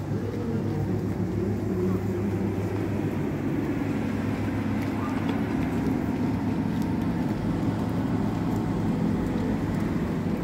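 Street traffic ambience: a steady low engine hum of road vehicles, with people's voices in the background.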